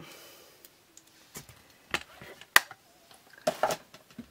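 Red rubber stamps being pulled from a clear plastic storage sheet by hand: a few sharp clicks and taps with soft rustling, and a short cluster of handling noise near the end.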